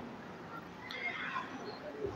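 A quiet pause between phrases of a man's speech at a microphone: low background hiss, with a faint, indistinct sound about a second in.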